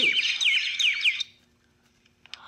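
Birds squabbling: a quick run of high chirps and squawks, each a short falling call, that stops a little over a second in.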